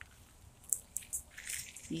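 Faint, scattered rustles and small ticks as a phone is handled and moved in among tomato plant leaves. The sounds come in a few short bits after a near-silent first half second.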